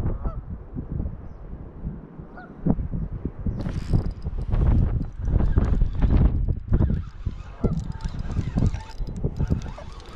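Wind rumbling on the microphone with rustling and handling knocks, loudest around the middle, over a few faint honking bird calls.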